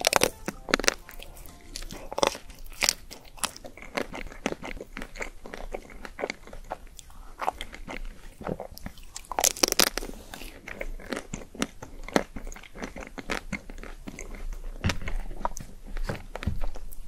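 Ice cream bar's hard pink chocolate coating crackling as it is bitten, then chewed in the mouth. Sharp crunches come in clusters, loudest right at the start, a little after two seconds, and about ten seconds in.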